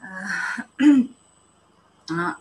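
A woman clearing her throat: a rasping breath for about half a second, then one short, louder voiced push just before the one-second mark.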